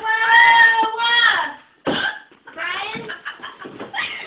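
A young woman's drawn-out, high-pitched vocal cry, held for about a second and a half, then a short sharp burst and quick, broken voicing.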